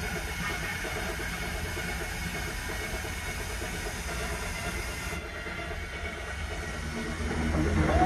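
Film soundtrack played through a home-theatre speaker system with a subwoofer: a steady hiss of gas over a deep rumbling drone. About 7.5 s in, music swells in and the level rises.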